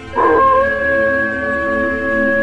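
Wolf howl sound effect: one long, steady howl that starts abruptly about a quarter second in and holds its pitch.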